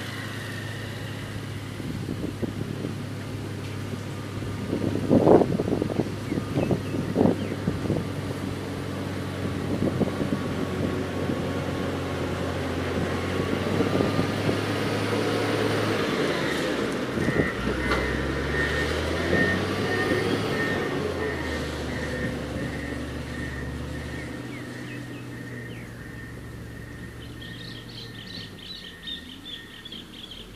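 Komatsu GD655 motor grader's diesel engine running, growing louder as the grader drives close by and then fading as it moves away. A few sharp knocks come about five to seven seconds in.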